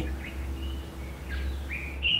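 Birds chirping in a few short, scattered calls over a steady low rumble of outdoor background noise.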